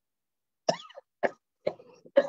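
A man coughing three short times, about half a second apart: a staged fit of coughing, acted out as someone in distress.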